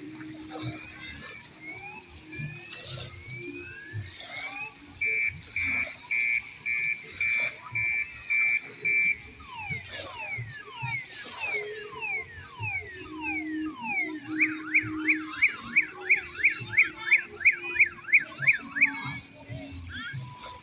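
An electronic vehicle alarm siren cycling through its tones: a run of rising chirps, then steady beeps about two a second, then falling sweeps, then a fast warble about three or four times a second near the end.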